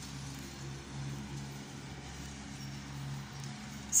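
Lawnmower engine running with a steady low hum.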